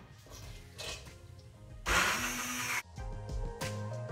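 Kenwood hand blender whirring in a pot of soft cooked quince for about a second, a steady motor hum under the churning, then cutting off abruptly. Background music follows.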